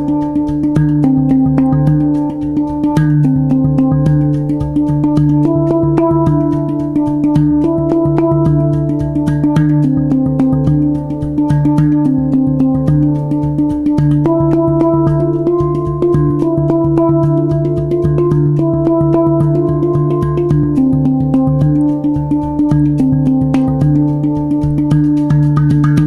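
A Hang, the Swiss-made steel handpan, played live with the fingertips: quick taps set off ringing, overlapping notes in a flowing melody over a low note that keeps sounding.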